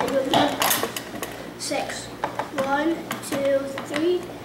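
Several sharp plastic clacks and rattles from a Trouble board game: the clear Pop-O-Matic dome being pressed so the die bounces inside it, along with plastic pegs on the board.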